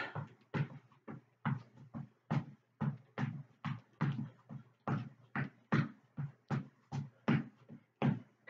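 Footfalls of a person skipping in place on a floor, a steady run of light thuds about two a second.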